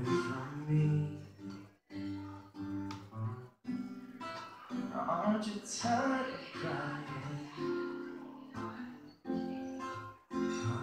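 Live song: an acoustic guitar strummed in chords, with a voice singing over it, and the strumming pausing briefly a few times.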